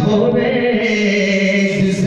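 A man's voice singing a Punjabi naat unaccompanied, holding one long steady note in a chanting style.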